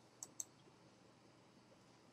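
Two quick clicks of a computer mouse, about a fifth of a second apart, over near-silent room tone.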